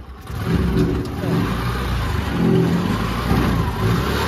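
Motorcycle engine revving and pulling away in gear, towing a steel cargo trolley. The engine note drops briefly at the start, then picks up about half a second in and runs steadily.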